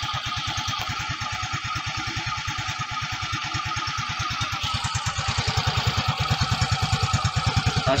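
Yamaha Mio Gear scooter's 125 cc single-cylinder fuel-injected engine idling on a cold start, an even pulse of about ten firings a second that grows louder in the second half. The idle is very low and the scooter shakes with it, which the owner takes for an abnormal idle needing adjustment by the dealer.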